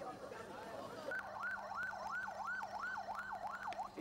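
Ambulance siren sounding a fast wail that sweeps up and down about three times a second, starting about a second in, over background voices.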